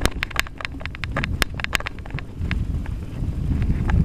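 Mountain bike rattling down a rough dirt trail: a rapid run of sharp clicks and knocks from the bike and its handlebar-mounted camera as it jolts over bumps, over a steady low rumble of tyres and wind. The knocks come thickest in the first couple of seconds and thin out after.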